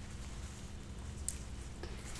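Quiet room tone with a steady low hum, and faint handling sounds of flower stems and foliage being worked into a hand-tied bouquet, with one light click a little over a second in.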